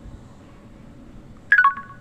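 A phone messaging app's voice-recording chime: after about a second and a half of quiet room tone, a quick three-note falling chime marks the end of a one-second voice-message recording.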